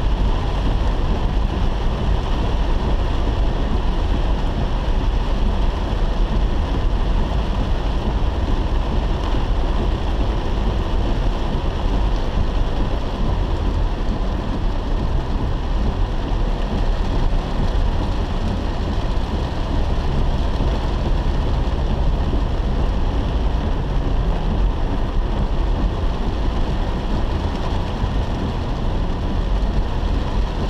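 Heavy rain beating steadily on a car's roof and windscreen, heard from inside the cabin over the low rumble of the moving car.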